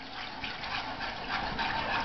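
Gravy being stirred in a skillet: a wet, bubbly liquid sound that grows slowly louder.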